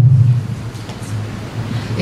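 Low rumbling handling noise from a desk microphone being gripped and adjusted on its stand, strongest at the start and fading within about half a second.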